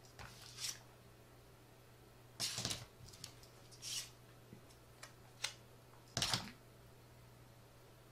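Faint handling sounds: about five short crinkling rustles of the heated food pouch and its shipping-envelope insulation being moved, the loudest two about two and a half and six seconds in, over a faint steady hum.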